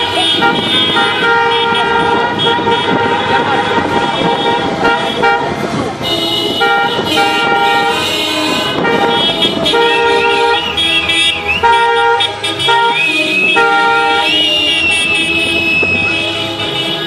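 Celebratory honking from a column of cars: several car horns sounding at once in long and short blasts, starting and stopping over and over, with people shouting over them.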